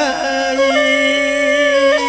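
Khmer traditional ceremonial music: a voice holds one long, steady note over instrumental accompaniment.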